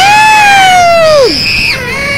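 A loud drawn-out note from a child's paper party horn that falls away after about a second, followed by a short shrill squeal, among shouting children.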